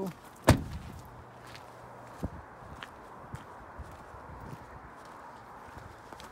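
A Ford Transit Custom van's front cab door slammed shut about half a second in: one loud, sharp bang. A lighter click follows, then faint scattered ticks that fit footsteps on gravel.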